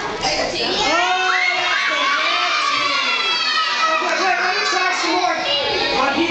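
An audience of children shouting and calling out all at once, many high voices overlapping.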